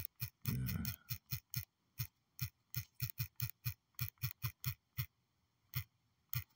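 Typing on a smartphone's on-screen keyboard: a quick, irregular run of about twenty light clicks, one per letter, with a short pause near the end.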